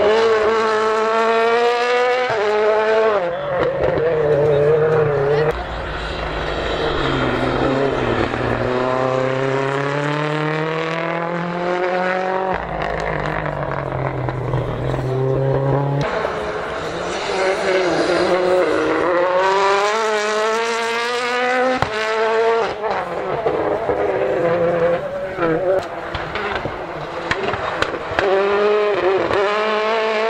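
Rally cars with turbocharged four-cylinder engines accelerating hard past at full throttle. Each car's pitch climbs and then drops sharply at each upshift, and several runs follow one another.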